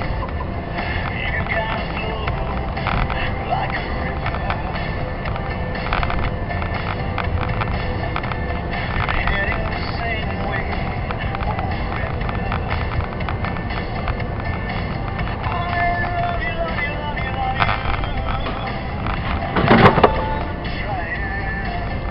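Steady low road and engine rumble inside a moving car's cabin, picked up by a dash cam. A single sharp knock near the end.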